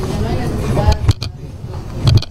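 Courtroom room noise: faint background voices over a steady low rumble, with a knock and low thumps about a second in and a louder thump at the end.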